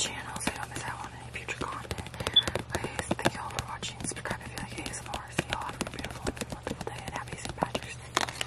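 Soft whispering with frequent light taps and clicks of fingertips handling a glossy trading card, over a low steady hum.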